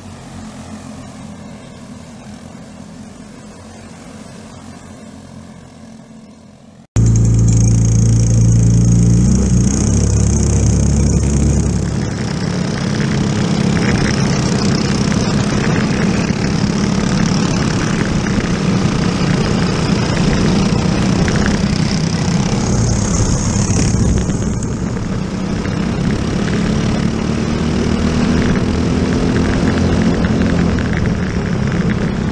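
Briggs & Stratton LO206 single-cylinder four-stroke kart engines racing. They are first heard faintly from trackside as the pack passes. About seven seconds in the sound cuts to loud onboard engine noise from one kart, its note rising and falling with the throttle and climbing near the end.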